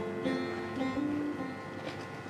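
Acoustic guitar played softly in a gap between sung lines of a live song, a few notes held and ringing.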